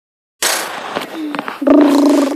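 A burst of rushing, rubbing noise as the recording starts, then a child's voice holding one steady note near the end.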